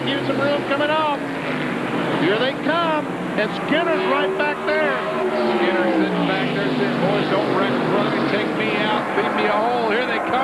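NASCAR SuperTruck V8 engines running at full throttle as race trucks pass side by side, the engine note falling in pitch as they go by.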